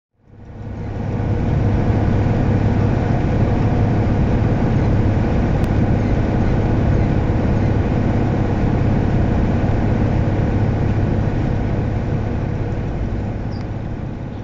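Engine of a 1962 Mercedes-Benz 312 bus running steadily with road noise while driving. It fades in over the first second or two and eases off slightly near the end.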